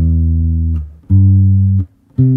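Electric bass guitar playing two sustained notes, E and then G a little higher, each ringing for just under a second: the opening of a C major triad played in first inversion (E, G, C).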